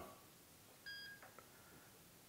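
T-fal OptiGrill control panel beeping as it is switched on at the power button: one short electronic beep about a second in, followed by a fainter tone.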